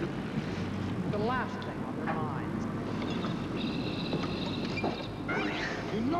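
Indistinct voices from the series' soundtrack over a steady hiss, with a steady high tone lasting about a second and a half a little past the middle.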